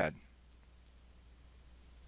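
Quiet room tone with a steady low hum, broken by a couple of faint computer mouse clicks just under a second in; the tail of a narrator's word fades at the very start.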